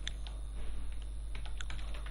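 Typing on a computer keyboard: an irregular run of key clicks, thicker in the second half.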